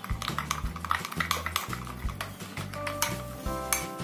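A metal spoon stirring thick curd in a glass bowl, with a rapid run of small clinks and scrapes as it knocks against the glass. Background music plays underneath.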